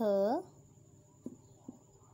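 A woman's voice gives one short syllable that rises in pitch at its end, then a pen on a paper workbook makes two small taps about half a second apart as a letter is written.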